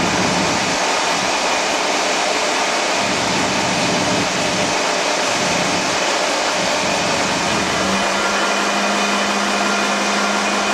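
Coles mobile crane's diesel engine running steadily at raised revs, loud and even, with a steady low hum joining in about eight seconds in.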